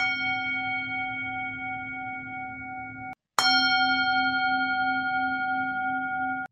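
A struck bell ringing twice: one strike right at the start, a second, louder one about three and a half seconds in. Each rings out with a steady, clear tone and is cut off abruptly.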